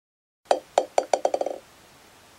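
Bouncing-ball sound effect: a hard ball bouncing to rest, about nine ringing bounces coming quicker and quicker over about a second.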